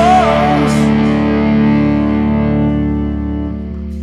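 A rock band's final chord ringing out on distorted electric guitars, slowly fading after a last sung note: the close of a song.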